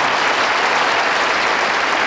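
Studio audience applauding, a steady, dense round of clapping.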